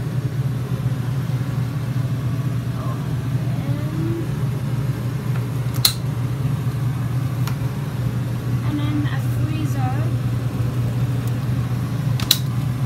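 A steady low machine hum, with faint voices in the background and a sharp click about halfway through.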